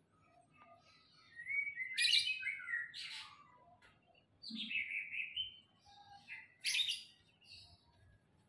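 Songbirds chirping and calling in short bursts, with quick sweeping chirps about two seconds in, again around five seconds and near seven seconds.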